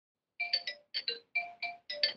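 A quick little melody of short electronic beeps, about seven notes of changing pitch, starting about half a second in, like a phone ringtone.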